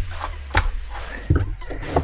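Scissors snipping through the sealed top of a small cardboard blind box, a few short sharp snips, over faint background music.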